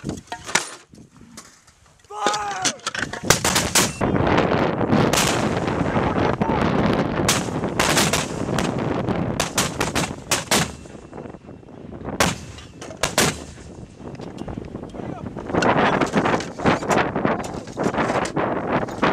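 M252 81mm mortars firing: a series of sharp reports over a dense rush of noise, starting about three seconds in, easing off after about thirteen seconds and picking up again near the end.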